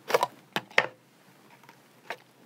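Plastic CD spindle case being handled and opened: three short, sharp clicks in the first second as the clear lid comes off the base.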